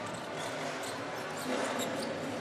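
Steady arena crowd noise, with a basketball bouncing on the court as players scramble for the rebound off a missed free throw.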